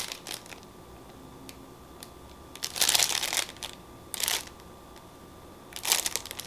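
Plastic packaging crinkling and rustling as it is handled, in a few short bursts; the longest and loudest lasts about a second near the middle, with a shorter one just after.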